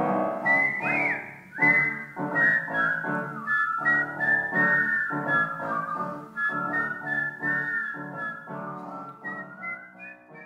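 A whistled melody over piano chords struck about twice a second; the whistle enters about half a second in with an upward slide, and the music fades out near the end.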